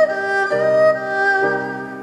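Piano chords under a sustained, wavering melody on an erhu, the Chinese two-string fiddle, played with vibrato.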